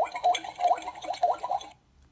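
Water-pouring sound effect played by the electronic sound panel of a Mighty, Mighty Construction Site sound board book: a short recorded clip of pouring water through its small built-in speaker, surging unevenly and cutting off near the end.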